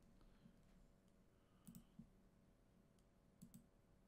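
Near silence: room tone with a faint low hum and a few faint clicks, two about halfway through and two more near the end.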